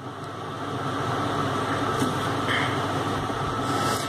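Steady background noise, a low hum with hiss, that swells during the first second and then holds.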